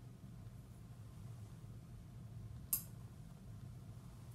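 Low steady room hum with a single sharp metallic click about three seconds in, from a tuning fork being struck or tapped for a hearing test.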